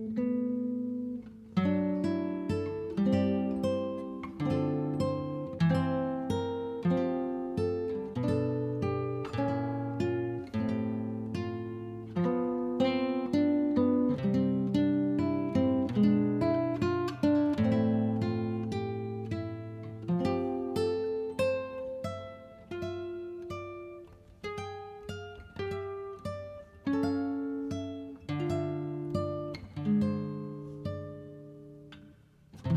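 Instrumental background music played on plucked acoustic guitar, a steady melody of notes picked several times a second, each ringing out and fading.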